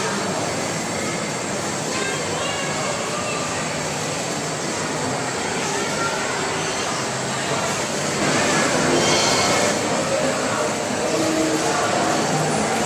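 Double-decker carousel turning, a steady rolling rumble, under indistinct background chatter.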